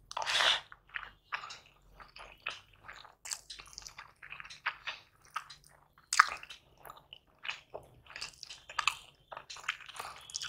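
Close-miked mouth sounds of a person eating egg biryani by hand: chewing and lip smacks in many short, irregular clicks, with a louder burst in the first second. Fingers work through the rice on a steel plate, with one sharp click about six seconds in.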